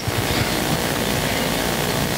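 Steady, even hiss of background room noise with no speech, holding at one level throughout.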